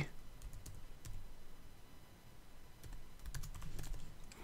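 Typing on a computer keyboard: faint, scattered keystrokes, a few in the first second and a quicker run of keys near the end.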